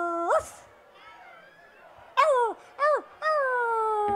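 A man's voice through the PA making wordless 'uf' yelps. A held note flicks upward and breaks off, and after a short pause come two quick yelps that jump up and fall back, then a long note that slides slowly downward.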